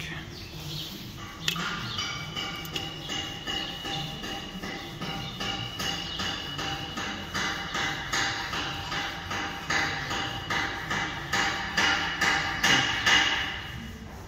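Rapid, repeated metal-on-metal strikes, a few a second, each leaving the same ringing tone; they grow louder near the end.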